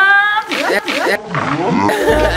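A woman's loud, drawn-out scream, followed by shrieking and excited voices: a reaction to having her face dunked in a basin of cold water.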